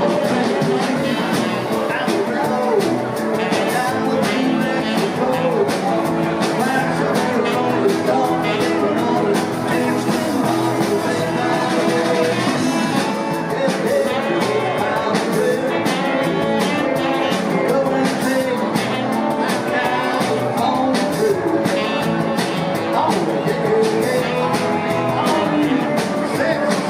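Live rock band playing vintage British-style rock: electric guitars, bass and a drum kit with cymbals, keeping a steady beat.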